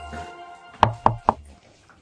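Three quick, sharp knocks about a quarter of a second apart, just after the tail of a jingle-bell music track fades out.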